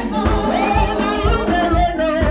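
Gospel praise music: voices singing a wavering melody over a fast, steady drum beat.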